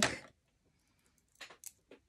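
A few faint, short taps about a second and a half in: a clear acrylic stamp block being inked on an ink pad.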